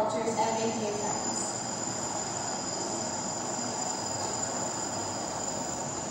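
Steady background noise: an even hiss with a thin, high, steady whine.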